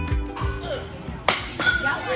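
Background music fades out, then a single sharp crack of a baseball bat striking a ball just past halfway, followed by children's voices.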